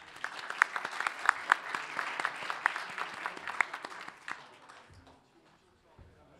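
Audience applauding, a dense patter of claps that dies away after about four and a half seconds.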